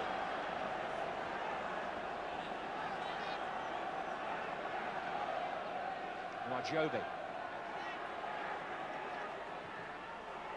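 Steady noise of a large football stadium crowd. A commentator's voice cuts in briefly about two-thirds of the way through.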